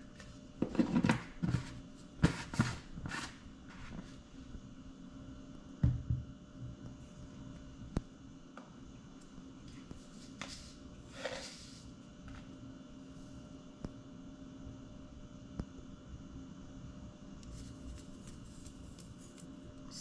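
Kitchen handling sounds: a cluster of short knocks and clicks, a single thump about six seconds in and a brief swish a little later, over a faint steady hum.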